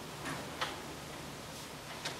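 A few faint, short clicks, irregularly spaced, over quiet room tone.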